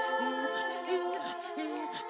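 Children's choir singing a cappella: several voices hold steady notes while lower voices repeat a short sliding figure about every half second. The voices imitate sounds of nature such as the wind.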